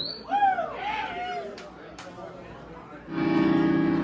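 Amplified band instruments between songs: after a brief voice and a couple of light clicks, a held chord sounds about three seconds in and rings steadily.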